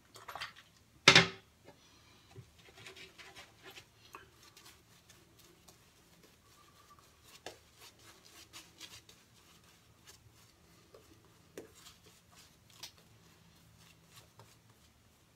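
A sharp clack about a second in, then faint, irregular swishing and scratching of a synthetic shaving brush working lather onto a stubbled face.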